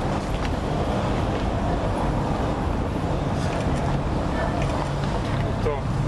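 Steady hum of street traffic with faint, indistinct voices mixed in.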